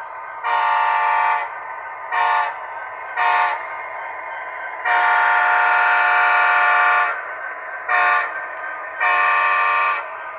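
Model diesel locomotive's sound system blowing a chime horn in six blasts: long, short, short, one long held blast of about two seconds, short, then long. A fainter steady engine sound from the same model runs between the blasts.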